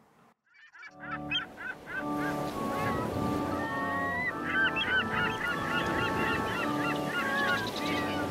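After a brief near-silence, instrumental music of sustained notes comes in about a second in. Over it runs a chorus of short, repeated, honking bird calls that carries on to the end.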